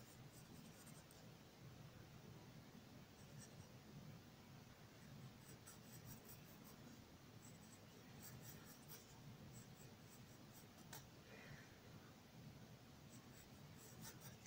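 Pencil drawing on paper: faint, steady scratching of sketch strokes with small ticks as the lead touches down and lifts.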